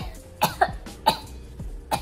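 A young woman coughing: about four short, sharp coughs in a row.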